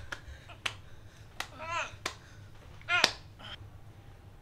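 A man in a chokehold making two short, strained choking cries, the louder one about three seconds in, with several sharp clicks and smacks of the struggle scattered between them.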